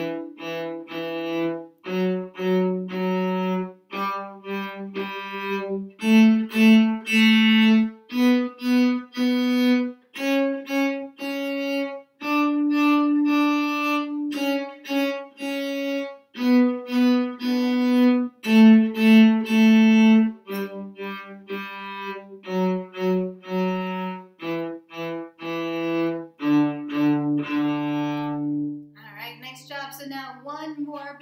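Cello playing a one-octave D major scale up and back down, each note bowed in a short-short-long 'apple pie' rhythm. It ends on a long low D that dies away near the end.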